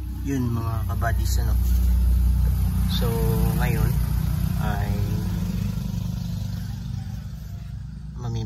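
A motor vehicle engine running steadily at idle close by: a low, even rumble. A few short bursts of voice sound over it in the first five seconds.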